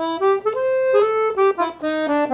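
Piano accordion playing a quick single-note run on the A blues scale over a C major 7 chord, climbing and then coming back down, with one note held about half a second in the middle.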